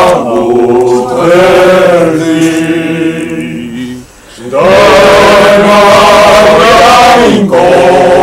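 Choir singing slow, sustained phrases, the voices holding long notes, with a short break about four seconds in before the next phrase.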